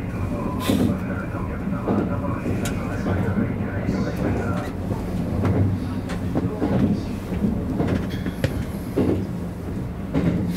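Kintetsu 50000-series Shimakaze express train running at speed, heard from inside its front car: a steady rumble and hum of motors and wheels on the track, with a few sharp clicks from the rails.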